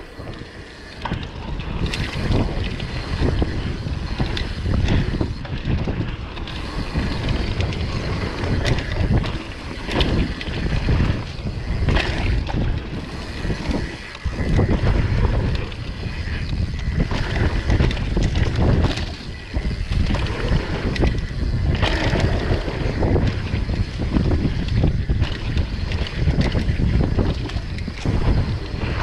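Transition TR11 downhill mountain bike ridden fast down a dirt singletrack: wind rushing over the camera microphone and tyres rolling on dirt, with frequent knocks and rattles from the bike as it hits bumps.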